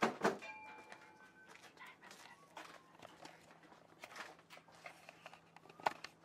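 A few sharp knocks and clatters of objects being handled, the loudest at the start and just before the end, with a couple of brief faint high tones early on.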